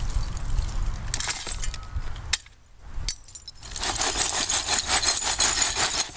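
A shovel working loose dirt, then from about four seconds in a fast, continuous rattle and clink as dirt and broken glass and crockery are shaken in a plastic-tub sifter with holes drilled in its bottom.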